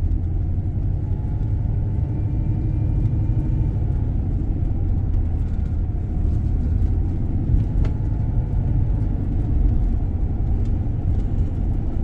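A steady low rumble of road and engine noise inside a moving car's cabin, with a single faint click about two-thirds of the way through.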